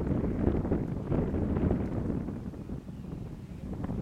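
Wind buffeting the microphone outdoors: a low rumbling noise that swells and eases unevenly.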